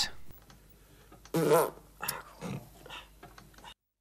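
A person's short, grunt-like vocal noises, the loudest about a second and a half in, with a few fainter ones after, and a moment of dead silence near the end.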